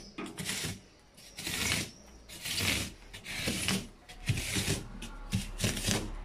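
A blade scraping and gouging into a fridge's polyurethane foam insulation in repeated rough strokes, about one a second, cutting a groove in the foam. A faint steady low hum runs underneath.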